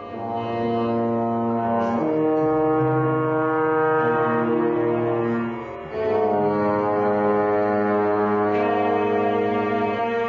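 Trombone playing long held low notes, with other held tones sounding together with it. The notes change about two seconds in, break off briefly just before six seconds, then new held notes start.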